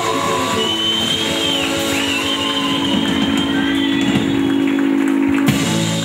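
Live rock band playing, with electric guitar prominent over the band and long held notes; a sharp hit about five and a half seconds in.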